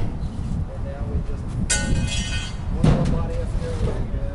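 Metal-tube bicycle-frame sculpture being shifted by hand: a brief high metallic screech about halfway through, then a knock, over a steady low rumble of traffic.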